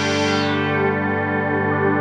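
Arturia Prophet-5 V software synthesizer holding a sustained buzzy chord. Its upper overtones fade over the first half second as the filter envelope amount is turned down, leaving a darker, steady tone.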